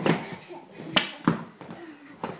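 A crawling baby's hands slapping a hardwood floor: a few short knocks, the sharpest about a second in.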